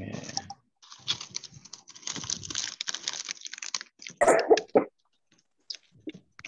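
Rapid, irregular clicking and clatter for about three seconds, heard through an online video call, then one short loud burst a little after four seconds in.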